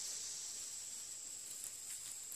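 Faint, steady, high-pitched drone of insects singing, with one small click near the end.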